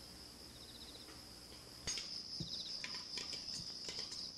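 Steady high-pitched insect buzz with short, quick chirping trills about half a second in and again around two and a half seconds. A sharp click comes near two seconds, after which the background grows louder.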